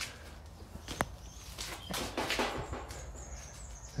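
Quiet handling and walking sounds as someone moves round a car in a garage: a single sharp click about a second in, then scuffing and rustling, with faint bird chirps in the background.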